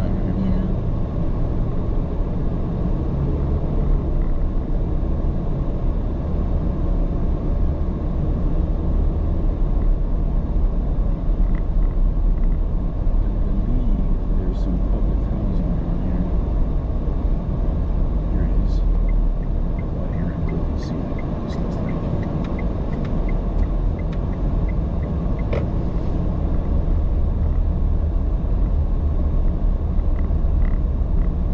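Car driving at low speed, a steady low rumble of engine and tyre noise heard from inside the vehicle. A short run of light, evenly spaced ticks comes a little past the middle.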